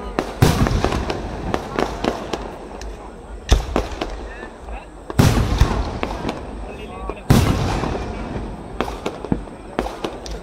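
Fireworks display: aerial shells bursting with four heavy booms about half a second, three and a half, five and seven seconds in, with crackling and smaller pops between them.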